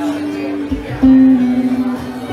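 Electric guitar playing a slow single-note melody: a held note, then a louder note about a second in that slips down slightly in pitch, with quieter low accompaniment beneath.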